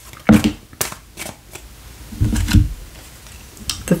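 Tarot cards being handled and drawn from a deck: a few sharp snaps and taps spread through, with a duller low knock about halfway.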